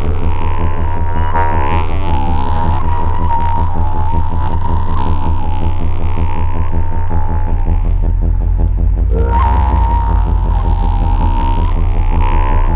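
Electronic drone from a modular synthesizer's phaser, modulated and in feedback mode, processing a sampled sound: a throbbing low hum with dense overtones and a steady ringing tone, while the phaser's sweep moves up and down in slow arcs. About two-thirds of the way through the bass drops deeper, and a brighter swell follows soon after.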